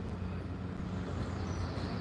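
Steady low rumble of distant traffic.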